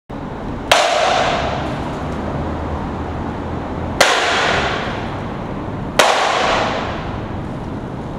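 Skateboard cracking against concrete three times, sharp pops about a second in, at the midpoint and two seconds later, each followed by a long echoing decay.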